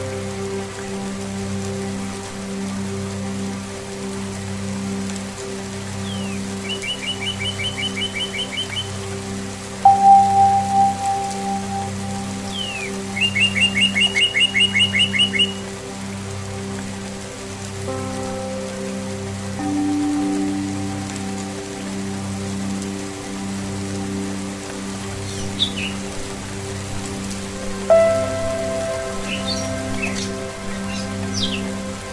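Ambient relaxation mix: rain falling under a steady low drone of strings and singing-bowl tones. A bell-like tone is struck about a third of the way in. Twice a songbird gives a rapid trill of evenly repeated high notes, a few seconds apart.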